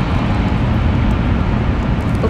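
Steady low rumble of a Shinkansen bullet train running, heard inside the passenger cabin.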